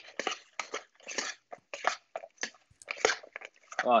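Metal tongs tossing freshly fried, crisp French fries in a bowl: a string of short crunchy scrapes and rustles, about two or three a second.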